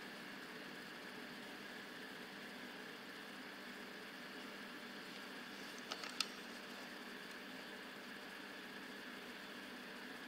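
Faint steady room noise with a quick cluster of two or three small clicks about six seconds in, from the camera body being handled.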